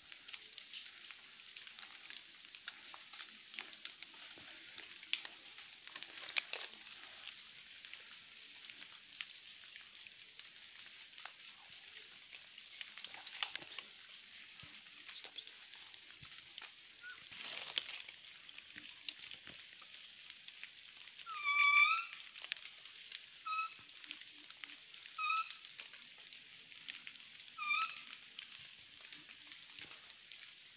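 A hunter's muntjac (kijang) lure call blown four times, short high calls about two seconds apart, each with a dip and upward hook in pitch, the first the loudest. Under it, faint rustling of movement through forest undergrowth.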